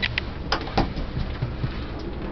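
Steady low rumble inside a moving cable-car gondola, with four or five short sharp clicks and creaks in the first second.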